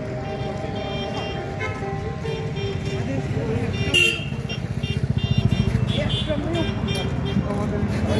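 Busy street ambience: motor vehicles running by, with an engine passing close and loudest about five to six seconds in, over background music and voices. A short sharp sound cuts in about four seconds in.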